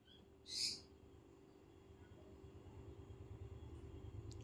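A single short, high chirp from a caged lovebird about half a second in, over a faint steady hum.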